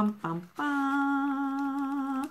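A woman's voice humming a short reveal tune: two quick notes, then one long held note of nearly two seconds.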